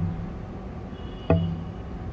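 Steady low hum of outdoor urban background noise, with a single short knock a little past halfway through.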